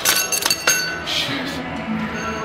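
Gym cable machine clinking: a few sharp metallic clinks with brief ringing in the first second, as the weight stack and handle are let down.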